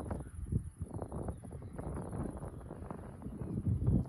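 Gusty wind buffeting a phone's microphone ahead of a thunderstorm: an uneven low noise in irregular gusts that swells slightly near the end.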